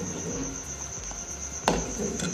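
Steel spoon stirring hot milk in a steel pot, with one sharp knock of the spoon against the pot near the end. A steady high-pitched whine runs underneath.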